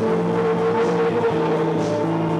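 A live gothic post-punk band playing a droning, sustained passage: a held chord from keyboards and guitar over steady bass notes, with faint drum-machine cymbal strokes about once a second.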